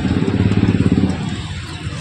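A motorcycle passing close by on the street, its engine running with a fast even pulse that fades away in the second half.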